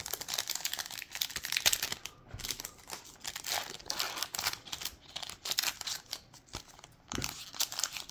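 Foil wrapper of a Topps Chrome baseball card pack being torn and peeled open by hand: a run of crinkling and crackling, with a brief lull near the end.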